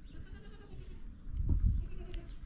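A faint bleat of a farm animal in the background, followed about one and a half seconds in by a louder, low muffled thump.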